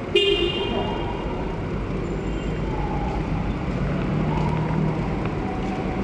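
Vehicle traffic in an enclosed concrete car park, engine noise echoing steadily, with a short car-horn toot just at the start.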